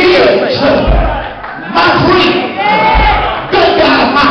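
Church congregation shouting and calling out over a preacher's chanted, sung-out climax, with deep bass hits about every two seconds.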